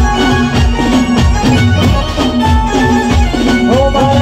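Live Gujarati folk music: a dhol drum keeps a steady beat under a melody line of long held notes in an instrumental break. Singing comes back in just before the end.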